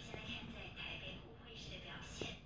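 Soft, low-level speech from a person.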